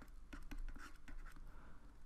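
Faint scratching and tapping of a stylus on a drawing tablet as a word is handwritten, a quick run of short strokes.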